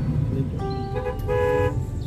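A vehicle horn honks twice in street traffic, the second honk louder, over a steady low rumble of road traffic.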